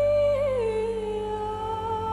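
A woman's wordless sung note, held steady, then sliding down to a lower note about half a second in and held again, over a low sustained accompaniment.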